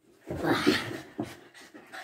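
French bulldog panting in a loud burst of about a second near the start, then fainter short breaths.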